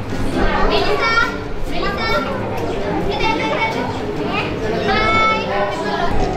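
Children's voices chattering and calling out in short, high-pitched phrases.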